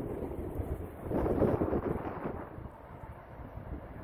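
Wind buffeting the microphone with a low rumble, with a stronger gust between about one and two seconds in.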